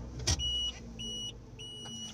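A car's warning chime beeping over and over at an even pace, about three beeps every two seconds, heard inside the cabin over a low hum, with a short click near the start.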